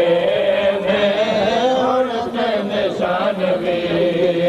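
A man chanting a mourning lament (noha) in long, held notes that waver in pitch.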